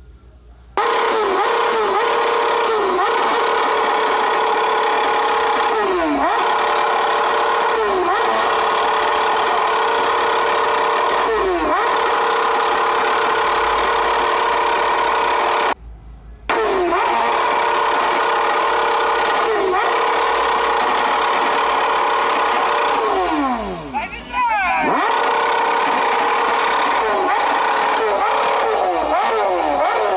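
BMW S1000RR inline-four sportbike engine revved hard and held at high rpm, starting suddenly under a second in. Every few seconds the revs dip briefly and come back. About three-quarters through they drop deeply and climb again, and near the end they fall away.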